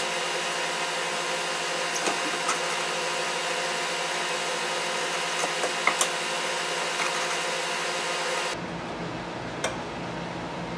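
Steady background hiss and hum with a few light clicks of wire leads and clips being handled at a speaker's terminals. Near the end the hiss drops suddenly and a low rumble takes its place.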